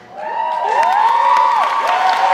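A few high-pitched voices whooping and cheering, their calls sliding up and down in pitch and overlapping.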